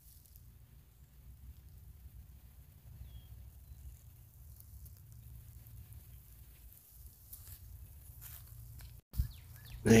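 Low, steady rumble of wind on the microphone outdoors, with faint rustling near the end.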